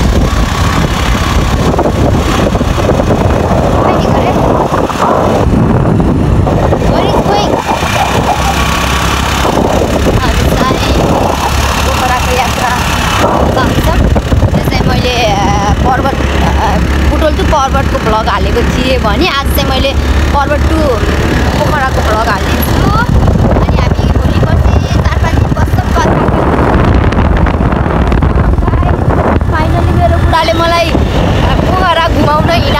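Wind buffeting the microphone and a motorbike engine running while riding, a steady loud rush with a low rumble underneath. From about halfway through, a voice talks over it.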